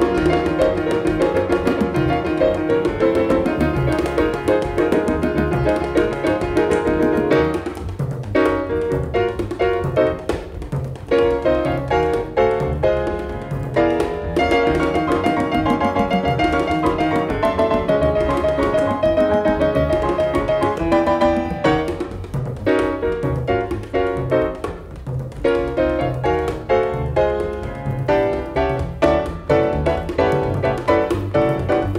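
1950s jazz piano trio recording: acoustic piano playing a ballad over bass and light drums.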